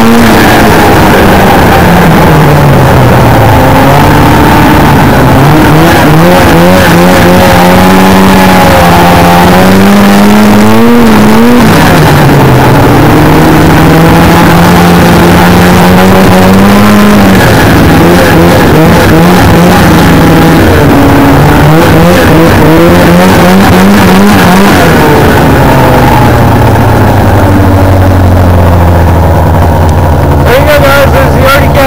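Arctic Cat ZR 600 snowmobile's liquid-cooled Suzuki 600 two-stroke engine running under way, loud, revving up and dropping back several times, and settling to a lower pitch near the end.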